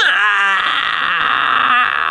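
A loud, high-pitched scream that starts suddenly and is held steadily for about two seconds: a jump-scare sound.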